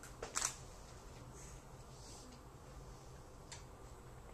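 Quiet room tone with a steady low hum. The tail of a spoken word is heard right at the start, and a single faint click comes about three and a half seconds in.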